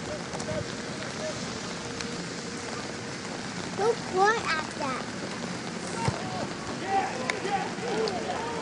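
Steady hiss of rain falling, with short shouted calls from players about four seconds in and again near the end.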